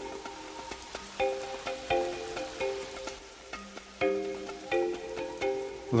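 Film score of repeated struck mallet-percussion notes, marimba-like, in short phrases, over the steady hiss of a running shower spray.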